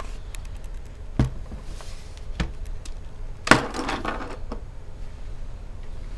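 Handling noise as the camera and laptop are moved: two single clicks, then a louder knock with a short rustle about three and a half seconds in, over a low steady hum.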